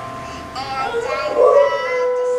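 A dog howling along to music, with long drawn-out notes that waver and slide in pitch and a louder, rougher cry about one and a half seconds in.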